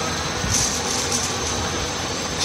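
Steady background noise: an even hiss with a low rumble under it.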